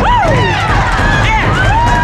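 Basketball shoes squeaking on a hardwood gym floor as players run and cut, several short squeaks that rise and fall, one held longer near the end, over the background voices of the gym.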